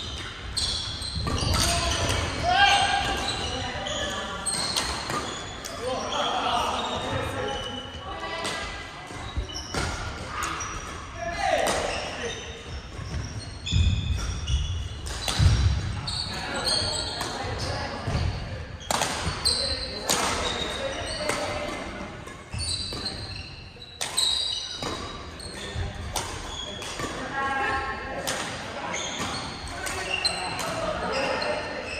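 Badminton rallies: racket strings strike the shuttlecock in sharp, irregular hits, together with players' voices. The sound echoes in a large gymnasium.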